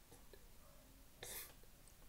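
Near silence: faint room tone, with one short breath a little over a second in.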